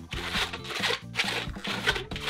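A red 260 latex twisting balloon being twisted by hand, the rubber rubbing against itself in several short rasping bursts, over steady background music.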